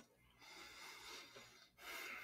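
Near silence, with two faint soft breaths through the nose, each about a second long, from someone eating.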